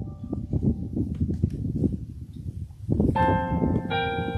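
Digital keyboard playing a hymn: held notes fade out near the start, and a new chord sounds about three seconds in. Wind rumbles on the microphone throughout.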